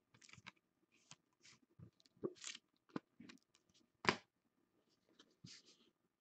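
Faint rustling and a few light clicks of trading cards being handled and swapped by hand, with the sharpest clicks about two, three and four seconds in.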